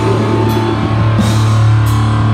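Live death-grind band playing loud, with distorted guitar and bass holding a low sustained note over the drums. Cymbal crashes come about half a second in and again near the end.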